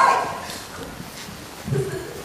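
A performer's high-pitched vocal cry, gliding in pitch, at the very start, fading out within half a second. A few low spoken sounds come near the end.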